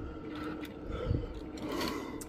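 Faint handling sounds of a small die-cast toy car being lifted off a textured display stand: a few light clicks and scrapes, with a soft low bump about a second in.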